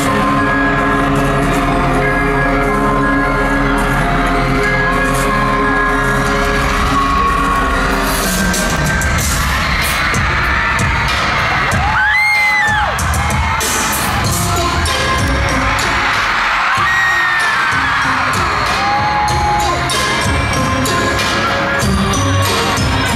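Live pop concert music over a PA, loud: held synth chords for the first several seconds, then fuller music with the audience screaming and cheering, a high scream standing out about halfway through.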